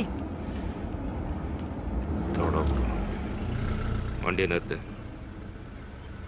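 Low, steady rumble of a motor vehicle engine that swells about two to three seconds in, with a couple of brief snatches of voices over it.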